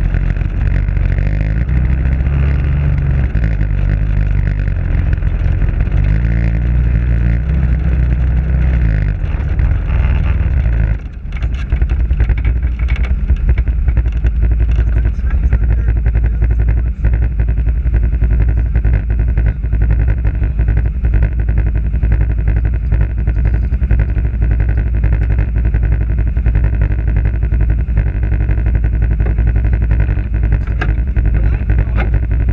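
Off-road vehicle's engine and driving noise heard through a camera mounted on its hood, moving along a rough dirt trail. About eleven seconds in the sound briefly drops and changes, then runs on steadily with many small knocks and rattles.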